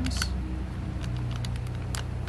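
Thin plastic seed-cell tray crackling in scattered short clicks as it is squeezed to loosen a seedling's root ball for potting up, over a steady low hum.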